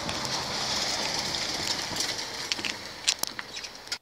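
Steady outdoor background noise, a hiss-like haze, with a few sharp clicks about three seconds in.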